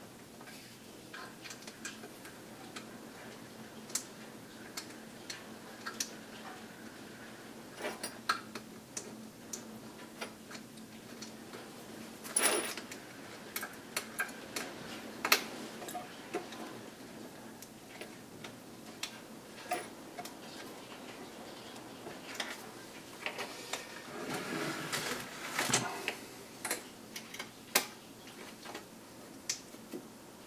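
Irregular small metal clicks and taps as Allen keys and screws are picked up and worked on a 3D printer's frame during assembly, with a longer stretch of scraping and shuffling about three-quarters of the way through.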